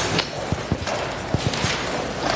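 Shuffling and scattered light knocks as people stand up in a large hall: about half a dozen short, low knocks fall irregularly through the middle, over a steady murmur of movement.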